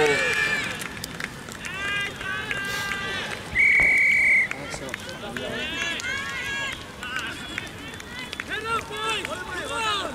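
A single referee's whistle blast, a steady high tone about a second long, just under four seconds in. Players shout and call across the field throughout.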